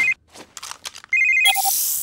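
Cartoon handheld video-phone (pup pad) ringtone: an electronic trilling ring that cuts off just after the start and sounds again about a second in. It is followed by a short beep and a whoosh as the call connects.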